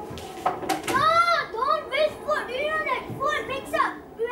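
A child's high-pitched voice making a run of rising-and-falling cries, about three a second, with no clear words, preceded by a couple of short knocks about half a second in.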